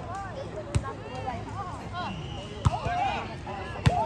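A volleyball struck three times by players' hands and forearms, sharp slaps spaced a second or more apart, the last and loudest near the end as a player jumps to hit at the net. Voices of players and onlookers run underneath.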